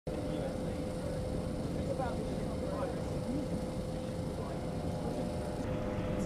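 Waterfront ambience: a steady low rumble with a constant hum, and the faint murmur of distant voices from people on the pier.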